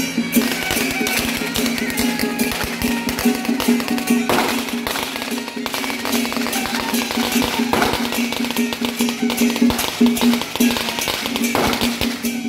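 Taiwanese temple-procession music accompanying a deity-puppet dance: rapid drum and cymbal strikes over a steady held tone. Louder crashes come at about four seconds, eight seconds and near the end.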